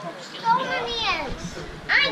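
Voices of a group of young children chattering and calling out, with a louder high-pitched shout near the end.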